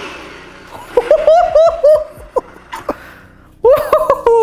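A man laughing: a run of four or five short 'ha' bursts about a second in, and another brief laugh near the end.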